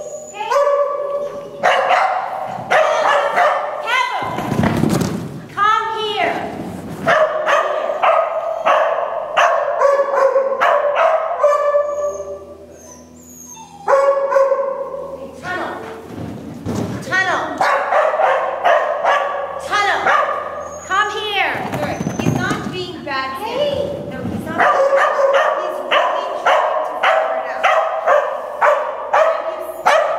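A small dog barking rapidly and repeatedly, several barks a second, with a short lull about twelve seconds in.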